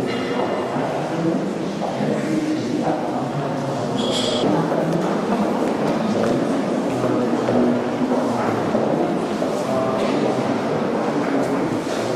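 Indistinct chatter of many people talking at once, echoing in a large hall, at a steady level; a short high-pitched sound cuts through about four seconds in.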